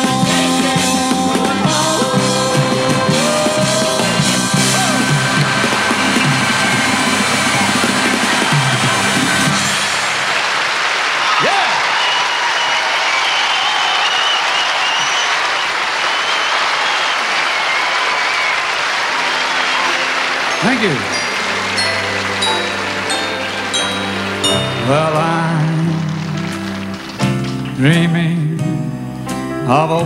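A rock-and-roll piano number with band ends about ten seconds in, followed by audience applause and cheering. Near the end a solo piano starts softly on a slow tune with a few separate high notes.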